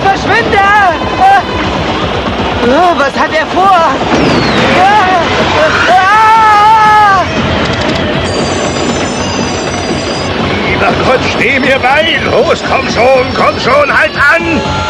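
Cartoon action soundtrack: dramatic music with rising-and-falling pitched phrases over a speeding train's rumble. About eight seconds in, a high electric buzz of sparking controls comes in for about two seconds.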